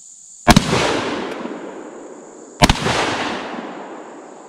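Two 12-gauge shotgun shots fired with buckshot, about two seconds apart, the first about half a second in. Each report echoes and dies away over a second or more.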